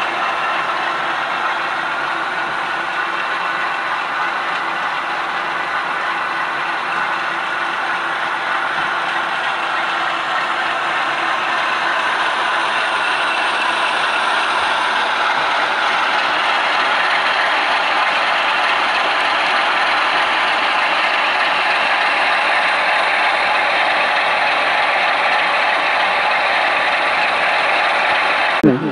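Model railway diesel locomotives running on the layout's track: a steady mechanical whir and rattle of small motors, gears and wheels on rail.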